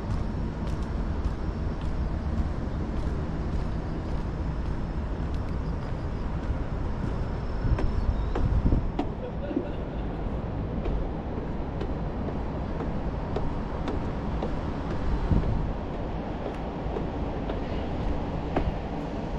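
Steady low rumble of outdoor city ambience from vehicles, with louder swells about eight seconds in and again near fifteen seconds.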